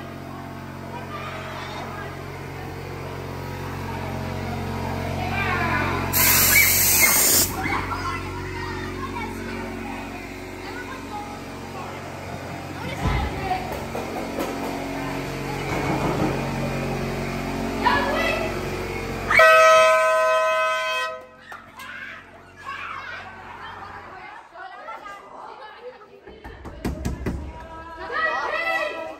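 Haunted-house walk-through: a steady low droning background track under children's voices, broken by a sudden loud hiss about six seconds in and a loud horn-like blare about twenty seconds in, after which the drone stops and it goes quieter.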